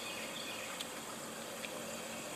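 Quiet outdoor ambience: a steady faint hiss with faint insect buzzing, and two small ticks about a second apart.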